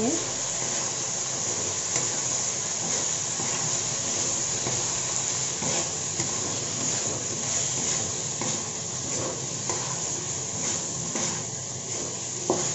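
Okra, potato and tomato with spice powders sizzling in a metal kadhai as they are stirred and turned with a spatula, a steady frying hiss with small scrapes and knocks of the spatula against the pan.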